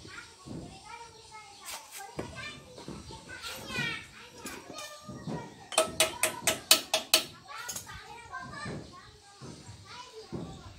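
Children's voices in the background. Just past the middle comes a quick run of about eight sharp, ringing metal-on-metal strikes at the rear wheel hub.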